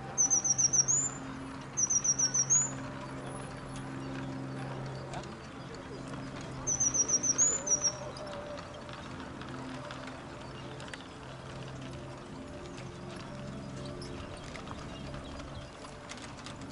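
A small songbird singing three short phrases, each a quick run of five or six high notes ending in a rising note; the first two come close together and the third follows several seconds later. A faint steady low hum runs underneath.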